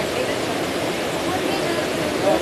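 Steady rush of a large waterfall, Tinuy-an Falls, with people's voices faint in the background.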